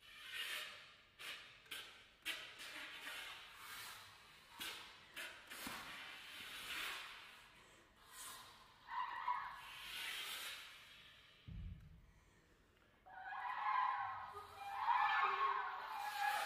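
Oboe and English horn duo playing contemporary extended techniques: breathy air-noise sounds and clicks through the reeds and keys, then, from about thirteen seconds in, sustained pitched reed tones that grow louder. A short low thump comes shortly before the tones begin.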